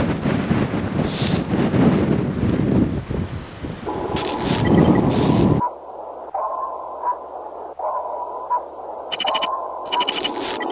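Wind buffeting the microphone for about the first five seconds. It is then cut off by an electronic glitch sound effect: crackling static with repeated short mid-pitched beeps and sharp clicks.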